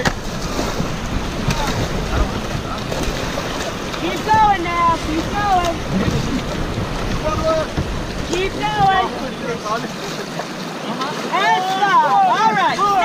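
Whitewater rapids rushing around an inflatable raft as paddles dig into the water, with wind rumbling on the microphone until about ten seconds in. Voices call out several times, louder near the end.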